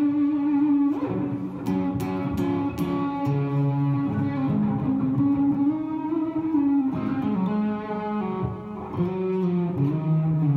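Stratocaster-style electric guitar being played: picked single notes and chords that ring on and change every second or so, with a few sharp pick attacks about two seconds in.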